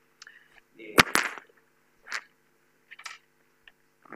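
Microphone handling noise: two sharp knocks close together about a second in, then fainter clicks and rustles, over a steady low hum.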